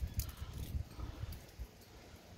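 Faint rustling of passion fruit vine leaves and handling bumps as a hand reaches in among the foliage, with a few light knocks in the first second and quieter toward the end.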